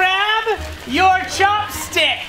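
A person's voice speaking, over background music.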